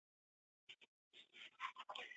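Near silence, with two faint ticks and then faint breathy sounds in the second half.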